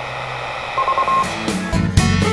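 Steady low hiss and hum with a short run of quick high beeps a little under a second in, then strummed guitar music comes in near the end.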